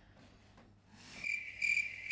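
Cricket chirping: quiet at first, then about a second in a high, steady chirp starts, pulsing about three times a second.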